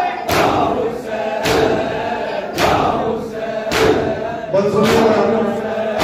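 Crowd of men chanting a noha in unison, with the whole crowd striking their chests together in matam: sharp slaps about once a second.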